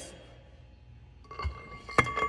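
Splined steel Top Fuel dragster axle sliding down into its drive hub: quiet at first, then metal-on-metal clinking with a ringing tone from about a second in, and a sharp metallic knock at the end as it goes in.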